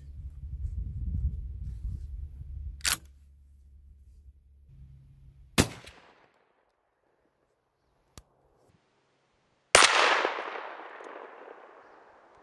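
A single shot from a Mossberg 930 12-gauge semi-automatic shotgun firing a 3-inch turkey load, just before ten seconds in, its report trailing off over about two seconds. Before the shot there is a low rumble and a couple of sharp knocks.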